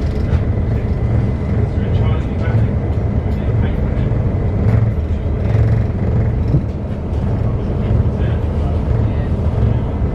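Passenger train running, heard from inside the carriage: a steady low rumble of wheels on track that swells and fades.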